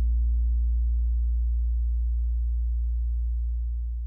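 Lakland electric bass guitar letting its final held note ring out: a single low sustained note slowly decaying.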